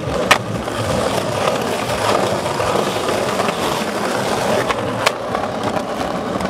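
Skateboard wheels rolling over stone paving, a steady rumble, with two sharp clacks of the board: one just after the start and one about five seconds in.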